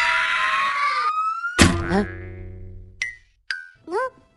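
Cartoon sound effects: a chainsaw buzz cuts off about a second in while a whistle slides upward, then a springy boing impact rings and fades, followed by three short boings near the end.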